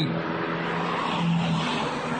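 Steady vehicle noise: an engine running under a rushing tyre or road noise, with a faint low hum.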